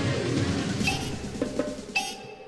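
Short musical jingle with drums and percussion, a segment stinger played over a title card, tailing off near the end.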